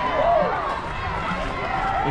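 Background chatter of a crowd of spectators, many voices talking and calling out at once, with no single voice standing out.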